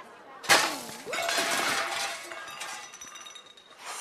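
A tray of dishes crashing down: a sudden loud crash about half a second in, then clattering and ringing for about a second and a half.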